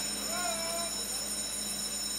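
Steady electrical hum of the race broadcast feed, with a faint, short, distant pitched call about half a second in.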